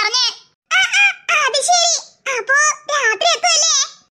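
Speech: high-pitched, pitch-raised cartoon character voices talking in short, quick phrases.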